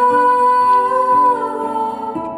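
A woman singing live, holding one long note for about a second and a half before moving to a lower one, over acoustic guitar accompaniment.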